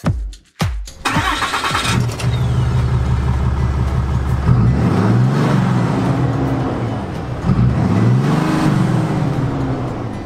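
Ram 3500's 6.7-litre Cummins turbo-diesel straight-six starting about a second in, then idling and revving up and back down twice, heard at the exhaust.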